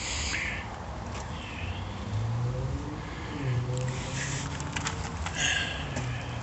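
Outdoor background noise with faint animal or bird calls and a few light clicks.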